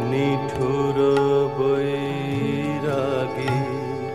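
Hindustani classical music: a melody of long held notes that waver and glide in ornaments, over a steady drone, with a few percussion strokes.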